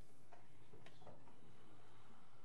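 A few light clicks and taps, three or four within the first second, over a quiet, steady room hum.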